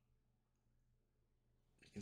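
Near silence: quiet room tone with a faint low hum.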